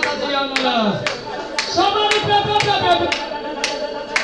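A woman singing into a microphone, with held notes and slides in pitch, over steady hand clapping at about two claps a second.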